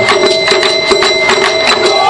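Taiko drum ensemble in a lighter passage: rapid sharp strikes, several a second, with a steady high ringing tone above them and none of the deep drum booms.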